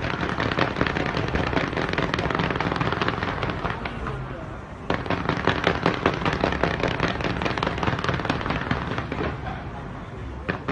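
Fireworks fired from the sides of a skyscraper, a dense run of rapid crackles and bangs. The crackling eases slightly around four seconds in, then a louder volley starts about five seconds in and tapers off near the end.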